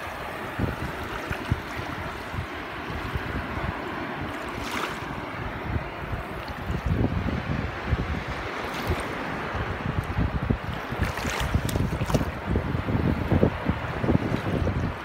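Wind gusting against the microphone in uneven low rumbles, over small waves lapping at a pebbly water's edge, with a few brief splashes.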